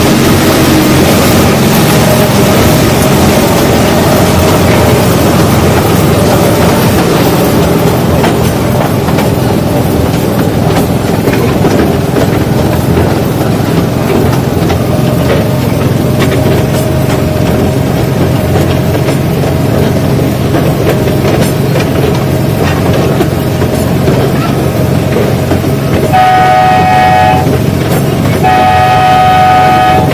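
Small tourist train running along its track, heard from on board: steady engine and wheel noise throughout. Near the end the train's horn sounds twice, two blasts each about a second and a half long.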